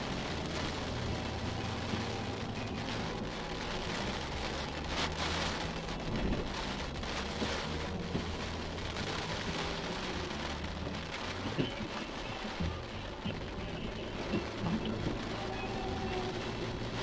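Rain pattering steadily on a car's roof and windows, heard from inside the cabin, with music playing low underneath.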